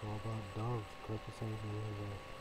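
A man's voice speaking in short phrases, with a faint steady electrical tone underneath.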